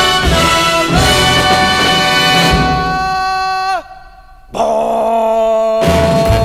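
Recorded Broadway show-tune orchestra with brass holding a big final chord that slides down in pitch and breaks off just under four seconds in. After a half-second lull a new sustained orchestral chord begins.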